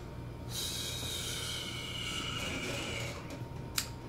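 A man's long, hissing breath out through the mouth, starting about half a second in and lasting nearly three seconds, then a short click near the end.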